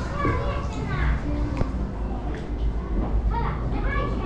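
Children's voices chattering and calling out, over a steady low rumble.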